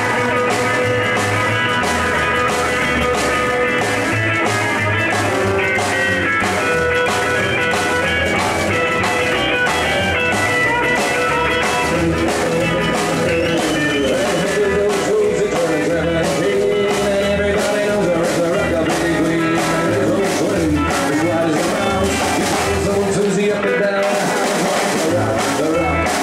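Live rockabilly band playing an instrumental break, a Telecaster-style electric guitar taking the lead over a walking bass line and a steady drum beat.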